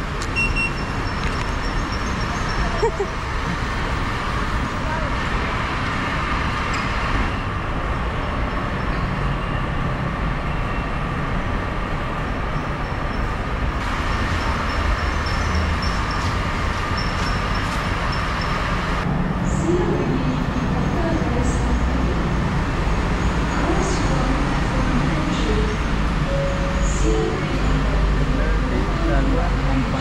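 Metro station ambience: a steady low rumble of traffic and station machinery with people talking in the background. A short electronic beep sounds just after the start as a card is touched on the fare-gate reader.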